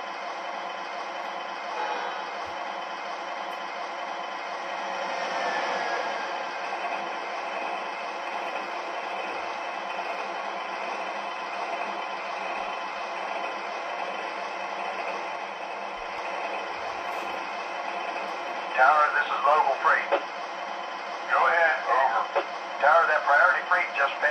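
Steady running sound from a model diesel locomotive's onboard sound system, with a swell in level about five seconds in.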